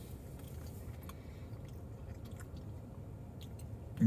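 Faint chewing of a ricotta cannoli, with a few small soft mouth clicks over a low steady hum. There is no loud bite or crunch: the shell is not as crunchy as normal.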